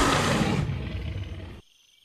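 A rough, growling dinosaur-style roar that fades over about a second and a half and then cuts off abruptly.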